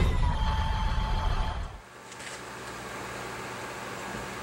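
The tail of an intro sound effect, a rumbling whoosh with a few held tones, cuts off abruptly a little under two seconds in. It gives way to workshop room tone with a steady low hum.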